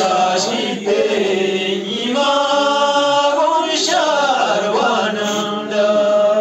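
A man chanting a slow, melodic chant with long held notes that slide in pitch.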